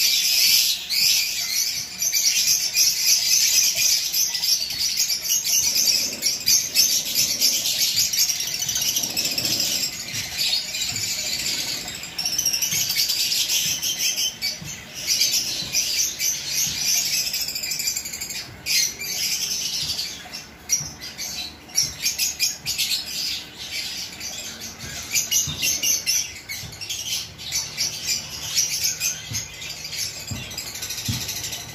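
Many small aviary birds chirping and chattering together without a break, high-pitched.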